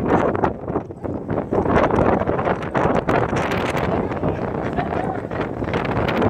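Wind buffeting the phone's microphone: a loud, uneven rush of noise that surges and drops throughout.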